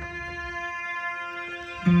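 Recorded music playing back over studio monitors: a steady held note with many overtones, joined near the end by louder, lower notes as the track gets going.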